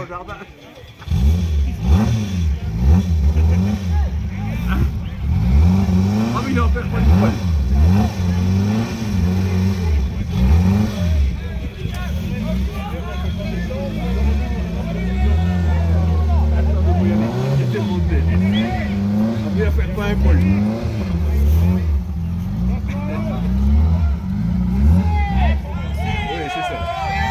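Rally car engine revving up and down again and again, starting about a second in, as the car, stuck in snow, tries to drive free while spectators push it.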